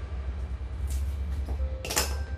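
Soft background music over a steady low hum, with two short crisp clicks, one about a second in and one near the end, as the plant's roots are cut and handled.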